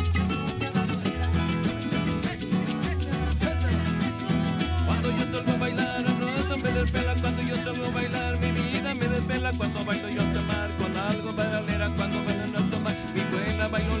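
Live acoustic cumbia instrumental: acoustic guitars strumming, with a bass line pulsing on the beat and a hand-percussion rattle keeping a steady, quick rhythm.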